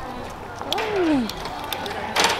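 People's voices in the background, with one voice sliding down in pitch about a second in, and a few faint clicks.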